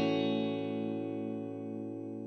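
A short musical sting: one guitar chord ringing and slowly fading.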